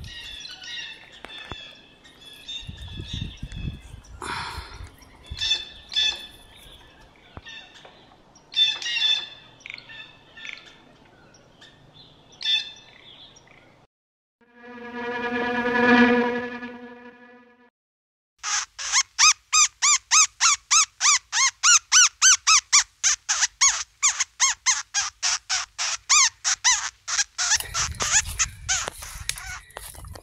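Woodland birds chirping, with a few dull thumps. About halfway through comes a single pitched tone that swells and fades over a few seconds. It is followed by a loud, fast run of chirping pulses, about five a second, that lasts roughly nine seconds.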